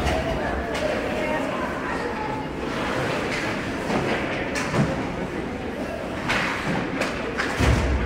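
Ice hockey game in an indoor rink: voices of players and spectators, sharp clacks from play on the ice, and two dull heavy thuds, one at the start and one just before the end.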